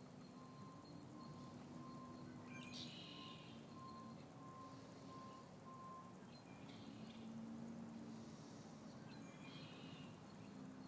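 Near-silent harbour ambience: a faint electronic beep repeating about one and a half times a second for the first six seconds, a low steady hum, and a few faint bird chirps.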